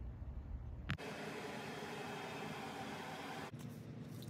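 A click about a second in, then a steady, even hiss with a faint hum under it, which cuts off suddenly about three and a half seconds in.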